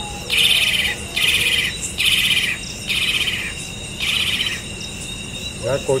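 An animal calling five times, each call a loud buzzy trill about half a second long, roughly a second apart. Under it runs the steady high drone of crickets.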